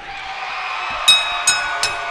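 Crowd noise swelling, then about a second in a ring bell clanging rapidly, three strikes a little under half a second apart: the bell that signals the end of the match after the pinfall.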